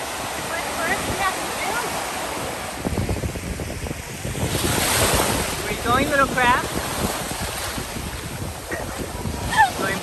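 Small waves breaking and washing up the beach, with wind buffeting the microphone; one wave swells louder about five seconds in. Short high-pitched voices call out a few times over the surf.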